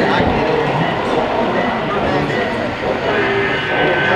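HO-scale model freight trains running past each other on a layout, over the talk of people standing around.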